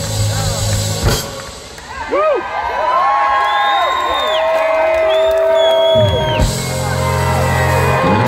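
Live R&B band playing through a stage PA, heard from the audience: a sharp hit about a second in, then the bass drops out for a few seconds under long held notes before the full band comes back in near the end.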